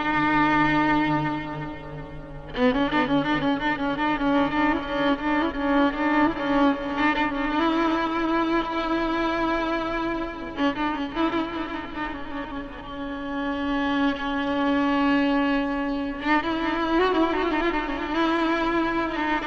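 Solo Persian violin playing in dastgah Shur: long held bowed notes with ornamented turns. A phrase fades out about two seconds in, a new one starts sharply, and another phrase begins near the end.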